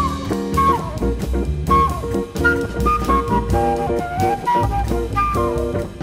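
Jazz quartet playing: a flute carries a stepping melodic line over short repeated guitar chords, a walking upright bass and a drum kit.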